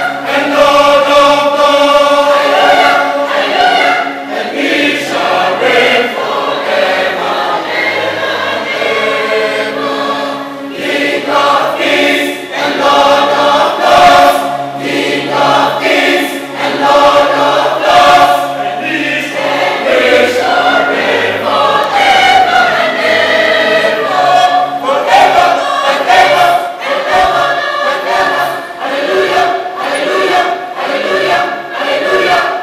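A large mixed choir of women and men singing together in sustained, flowing lines.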